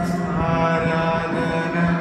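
Live worship music: sustained keyboard chords, held steady, with a man's voice singing into a microphone over them.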